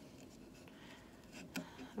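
Faint scratchy rubbing and small ticks of cotton string being drawn through and wrapped around the notches of a wooden lap loom.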